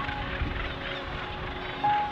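Northern gannets calling at a cliff colony, under soft background music with long held notes.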